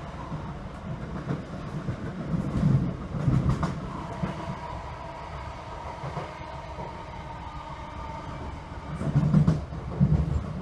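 Class 321 electric multiple unit running on the line, heard from inside the carriage: a steady rumble of wheels on rail with a faint steady whine, swelling louder twice, a few seconds in and again near the end, as the wheels thump over joints or pointwork.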